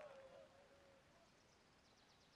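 Near silence: a held tone carried over from before fades out within the first second, leaving only faint outdoor room tone with a few faint high ticks.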